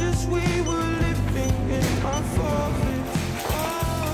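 Background music with a steady bass line and sung melody, a rock-style song.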